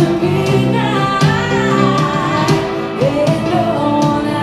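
Live band playing a song on electric and acoustic guitars, fiddle and drums, with a lead melody that slides up and down in pitch through the middle and climbs again near the end.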